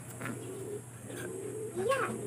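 Pigeon cooing: a low, wavering coo that rises in pitch briefly near the end.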